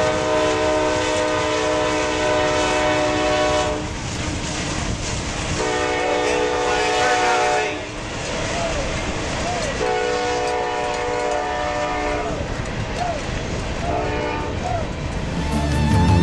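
A loud horn sounding the same steady multi-note chord in four blasts: a long one of about four seconds, two of about two seconds, and a short one near the end, over crowd noise.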